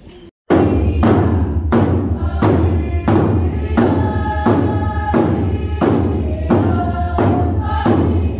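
Tlingit ceremonial song: hand-held frame drums beat steadily, about one and a half beats a second, under a group of voices singing a chant together. It starts abruptly about half a second in.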